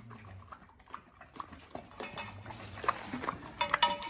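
A Presa Canario (Canary mastiff) eating wet mash from a bucket: chewing and lapping with scattered small clicks, which get busier in the second half.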